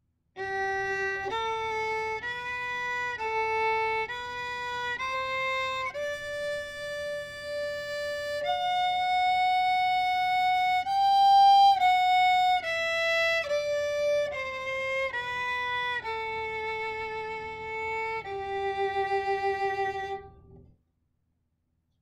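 Solo violin playing a G major scale in third position, starting on the G on the D string, climbing an octave and coming back down in groups of three notes. The final low G is held with vibrato and stops shortly before the end.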